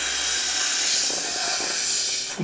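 A person blowing one long, steady breath by mouth into an inflatable toy ball to fill it: a continuous rush of air.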